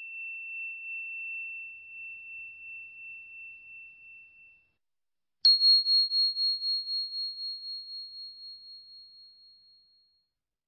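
Two clear bell-like ringing tones, one after the other. A softer, lower tone fades away over about five seconds. About five and a half seconds in, a higher tone is struck sharply; it is the louder of the two and rings on, pulsing as it slowly dies away.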